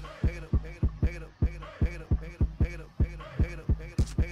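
Background hip-hop beat carried by deep 808 bass kicks whose pitch drops fast, about three a second.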